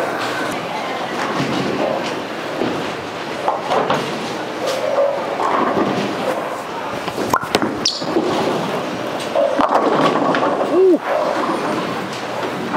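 Bowling alley din: a bowling ball is rolled down the lane and crashes into the pins with a few sharp impacts about two-thirds of the way in, over a steady murmur of voices and other lanes.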